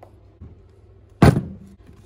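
A single sharp knock against the battery's hard plastic case about a second in, dying away over a few tenths of a second, from the battery being handled.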